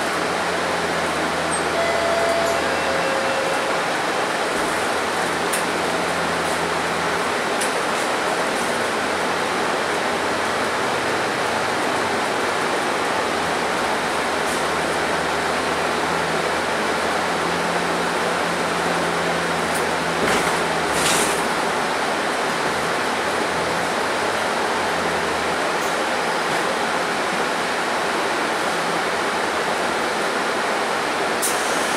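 Cabin noise of a Mercedes-Benz Citaro city bus under way: a steady rush of engine and road noise, with a low engine note that comes and goes as the bus drives through the curves. A short burst of noise stands out about two-thirds of the way through.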